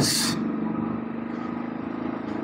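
Royal Enfield single-cylinder motorcycle engine running steadily under the rider, with an even, rapid pulsing beat.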